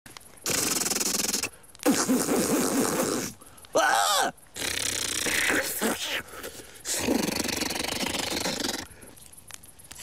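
A man's wordless vocal noises: breathy rushes, growling and groaning, and a short wavering cry about four seconds in, coming in separate bursts with short pauses between them.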